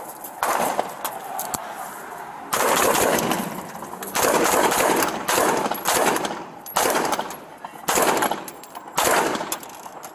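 Close gunfire from an AR-style patrol rifle: about seven loud shots, spaced a second or two apart, each trailing off in a long echo.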